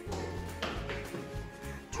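Background music with a steady low bass line, and a few faint taps about halfway through.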